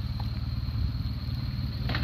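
Motorcycle engine idling: a steady, rapid low-pitched pulsing.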